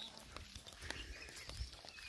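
Faint footsteps of several people walking on a dry dirt path, a few soft scattered steps over quiet outdoor background.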